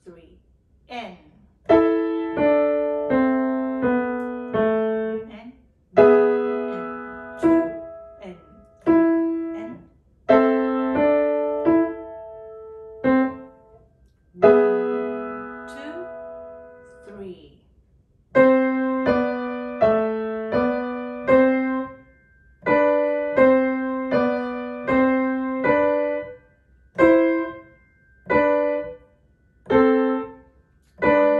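Piano played with both hands at a medium practice tempo: a simple beginner's piece in short phrases of a few notes each, with brief pauses between the phrases.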